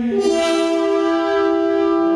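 Classical music from a choir and orchestra: one sustained chord held steady, its higher notes coming in just after the start.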